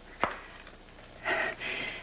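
A single sharp click as a mobile phone is shut just after a call ends, then about a second later a short breathy sound.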